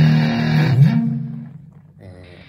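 Distorted electric guitar through a Marshall JCM2000 amplifier, sent over a Phoenix A8 wireless system, playing a low sustained riff. A little under a second in, the note slides up in pitch, is held briefly and dies away by about a second and a half.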